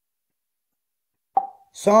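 Silence for more than a second, then a single short pop with a brief ringing tone about a second and a half in, followed by a person's voice starting to speak near the end.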